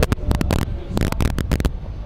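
Handling and wind noise on a handheld camera's microphone: a low rumble with an irregular run of sharp crackles and clicks that stops shortly before the end.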